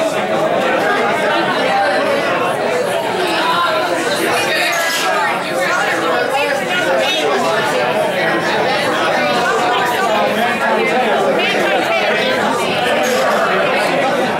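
Crowd chatter: many people talking at once in a packed room, a steady hubbub of overlapping conversation.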